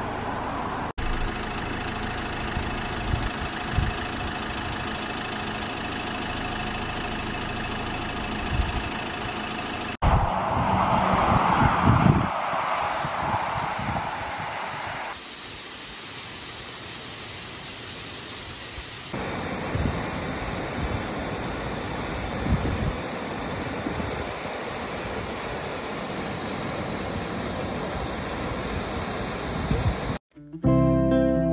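A steady rushing noise that changes abruptly several times as one stretch gives way to the next, with a louder, gusty stretch partway through. In the later stretches it is the water of small woodland waterfalls splashing down rock.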